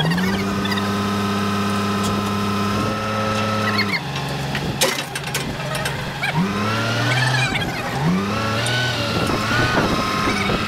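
Forklift engine running at raised revs as it hoists a truck engine and gearbox on chains. Its pitch drops about four seconds in, then rises again in short revs near six and eight seconds.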